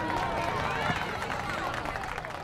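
Busy crowd hubbub: many voices talking over one another at once, with no single clear speaker.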